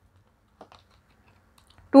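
A few faint clicks and taps of paper tarot cards being handled and drawn from a fanned deck, with a woman's voice starting at the very end.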